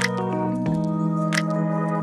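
Intro jingle music of sustained chords, which change about two-thirds of a second in, with one short sharp sound effect about one and a half seconds in.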